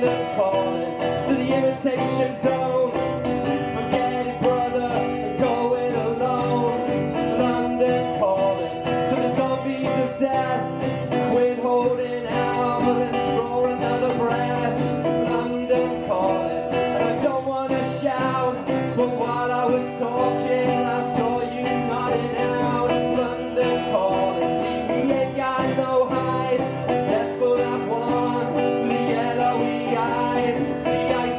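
Two acoustic guitars strummed together in a live performance, with a man singing over them.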